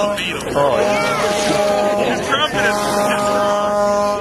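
People's voices over a steady droning tone, which breaks off briefly twice.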